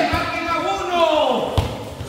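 People shouting long, sliding calls during a soccer game on a hard concrete court, with two thuds of the soccer ball, one near the start and one about a second and a half in.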